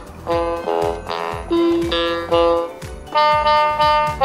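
MQ-6106 61-key electronic keyboard played in one of its preset instrument tones: a run of about eight separate held notes, over a steady low beat.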